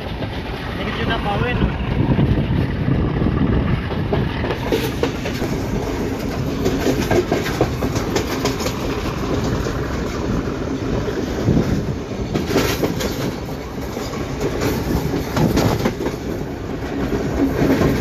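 A passenger train running along the rails, heard from a carriage window: a steady rumble, with the wheels clacking over rail joints in clusters, loudest about twelve seconds in and again near the end.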